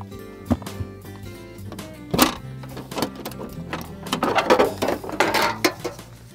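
Background music over the handling of an outboard's engine cowling: a sharp click about two seconds in as it is unlatched, then rubbing and scraping as the cover is lifted off the powerhead.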